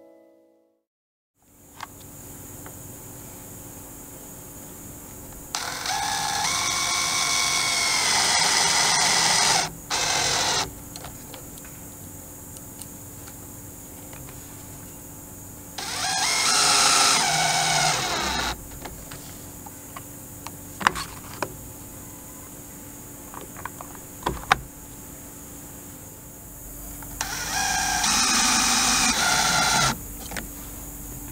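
Cordless Craftsman drill/driver driving screws into a wooden deck post to mount a plastic solar post light. It runs in four bursts: a long one about six seconds in that rises in pitch partway through, a short one just after it, another around sixteen seconds, and a last one near the end. Light clicks and knocks from handling the parts come between the runs.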